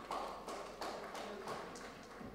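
Audience applauding: scattered, sparse hand claps, about three a second.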